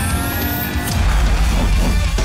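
Dramatic title music for a TV show logo reveal, with deep bass and a rising swoosh effect that ends in a sharp hit just under a second in.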